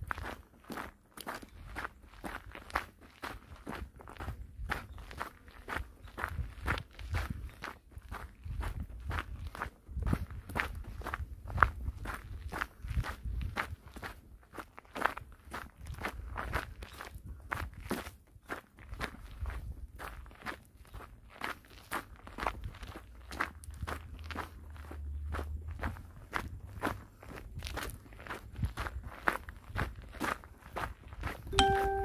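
Walking footsteps on a gravel trail at a steady pace of about two steps a second.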